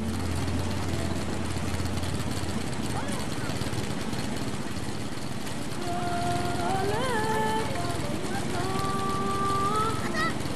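Water gushing steadily from a filter unit's outlet pipe onto sand. From about six seconds in, high-pitched voices call out in drawn-out, rising and falling notes.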